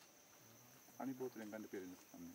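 Steady high-pitched chirring of forest insects, with a man's voice speaking briefly in Thai about a second in.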